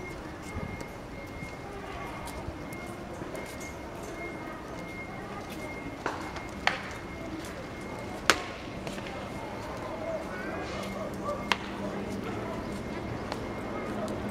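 Batting practice: a handful of sharp knocks from a wooden bat meeting pitched balls. They come a second or more apart, the loudest about seven and eight seconds in.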